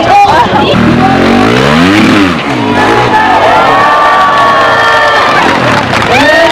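Trials motorcycle engine revving up and back down once over about two seconds, heard over crowd noise and voices.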